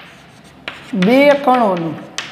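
Chalk writing on a blackboard: short taps and scrapes as letters are written, with a short spoken word from the teacher in the second half.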